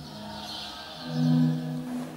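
Live church organ and electronics music: two sustained low tones held together, swelling to a peak past the middle and easing off again, with a hissing high noise over the first second.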